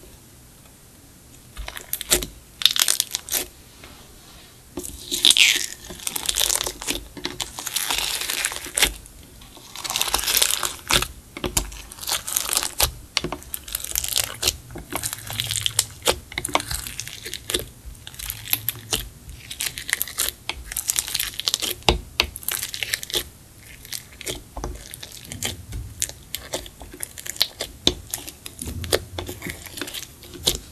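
Clear slime mixed with makeup, glitter and beads being stretched, folded and squished by hand in a glass dish, making sticky crackling and popping sounds that come in irregular runs with short pauses between.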